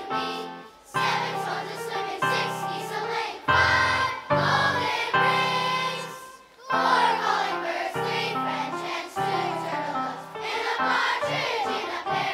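A large children's choir singing, in phrases broken by two short breaks, about a second in and just past the middle.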